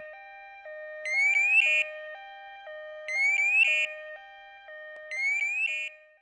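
Evacuaid emergency bracelet's alarm sounding in emergency mode, the man-down signal that marks a person for rescuers. A low two-tone electronic warble switches pitch about twice a second, with a group of three quick rising chirps about every two seconds, three times over.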